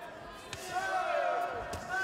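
Two sharp thuds of gloved punches landing, about half a second in and near the end, under men's voices shouting from ringside.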